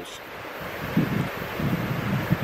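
Wind buffeting the microphone: a steady hiss with a ragged low rumble that picks up about halfway through.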